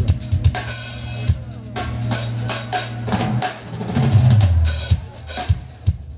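Live jazz-funk band playing, led by a drum kit with sharp snare and kick hits and cymbal crashes over a steady electric bass line. About four seconds in, a low bass note glides down in pitch.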